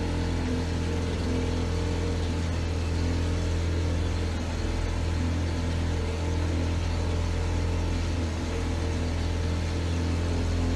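A motorboat's engine running steadily under way: a constant low drone that holds an even pitch.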